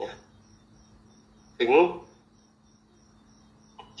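A pause in a man's talk, in which he says one short word just under two seconds in. Under it, a faint high-pitched chirping pulses steadily about four times a second over a low steady hum.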